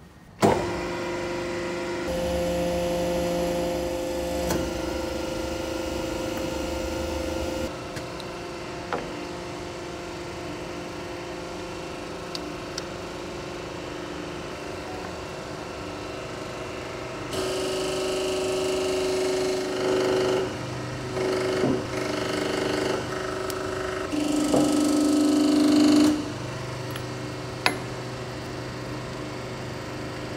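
Steady hum of workshop machinery with several held tones, shifting in pitch and loudness several times and loudest for a couple of seconds near the end, with a few sharp metal knocks.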